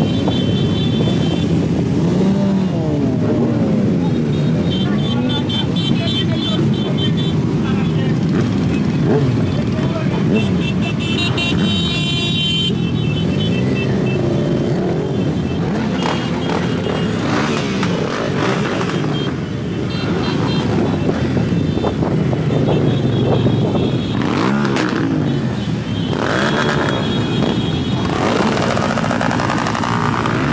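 A large pack of motorcycles idling and being revved together, many engine notes rising and falling over one another, with crowd voices among them.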